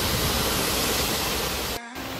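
Waterfall rushing steadily, several streams of water dropping over a cliff; the sound cuts out briefly near the end.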